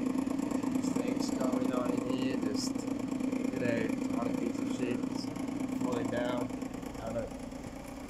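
A steady low mechanical hum, of the engine kind, that fades out about six and a half seconds in, with short bits of voice over it.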